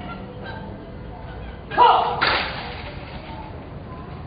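A short shouted drill command with a falling pitch, followed about half a second later by a sharp crack as a squad of soldiers makes a drill movement in unison.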